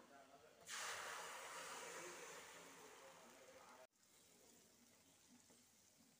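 Ground tomato paste poured into hot tempering oil in a steel kadai, sizzling sharply from about a second in and fading away. The sizzle breaks off abruptly a little past halfway, leaving only a faint hiss.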